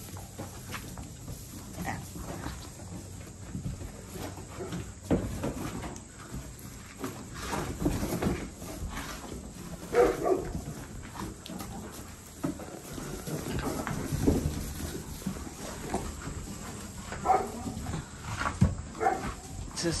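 Pygmy goats bleating now and then, the clearest call about halfway through and more near the end, over rustling and shuffling in the straw bedding.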